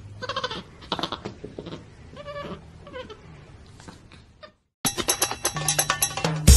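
A few short, high-pitched vocal calls, spaced out over about four seconds, then a brief dropout and a sudden change to a busier, clicky sound near the end.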